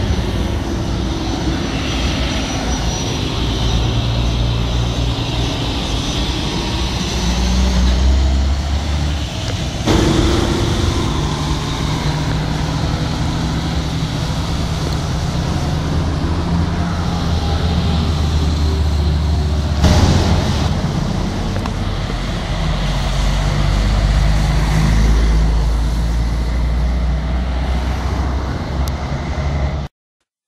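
Steady low rumble of road and engine noise from a vehicle travelling along a highway amid truck traffic. The sound changes abruptly about ten and twenty seconds in, where clips are joined.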